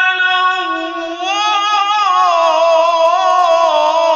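A single high voice in melodic Quran recitation (tilawat) by a qari, holding long notes. The pitch steps up about half a second in, then wavers and turns in ornamented runs.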